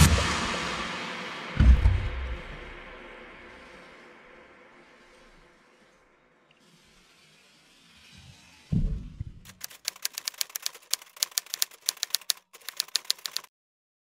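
Electronic background music fading out, then after a pause a low thud and about four seconds of rapid, irregular typewriter key clacks, a typing sound effect for on-screen text.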